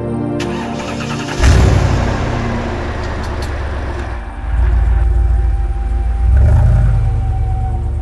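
Background music over a car engine: a sudden loud start about a second and a half in, then the engine running with a low rumble that swells twice more.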